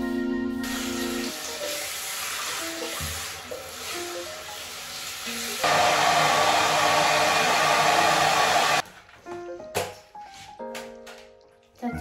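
Tap water running steadily as hair is rinsed over a sink, then, about six seconds in, a louder hair dryer blowing for about three seconds before cutting off suddenly. Background music plays throughout.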